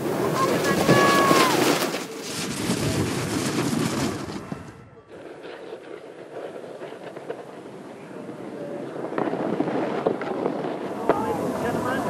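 Snowboards carving and scraping over packed snow, a rough hiss with wind on the microphone and scattered shouting voices. The sound drops away sharply just before five seconds in, then builds again.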